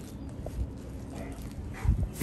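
A Rottweiler moving about on bare dirt close by: soft, low thuds of its paws, with a heavier thump near the end.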